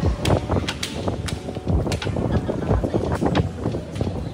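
Footfalls and handling bumps on a handheld camera's microphone while walking, making a string of low thumps about two a second.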